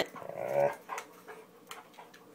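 Siberian husky 'talking': a short grumbling vocal call about half a second in, the husky's demand for dinner, then quieter with a few faint clicks.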